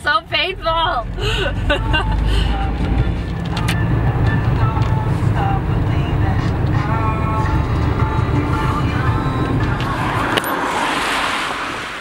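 Steady low road and engine rumble inside a moving car's cabin, with faint music and voices over it. Near the end the rumble gives way to a hiss.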